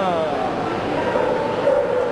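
A small dog yips a few times right at the start, each yip falling in pitch, over the steady chatter of a crowd.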